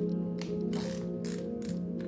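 Cycling shoe's dial closure (BOA-type) ratcheting as it is turned tight: four short runs of clicks within about a second and a half, over steady background music.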